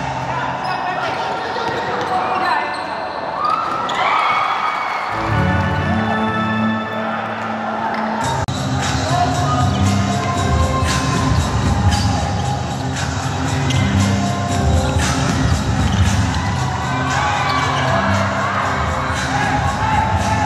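Basketball bouncing on a hardwood court during play, with short repeated strikes, under background music with a steady bass line.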